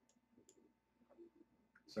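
Near silence with a few faint, sharp clicks from a computer keyboard as numbers are typed into a dialog box.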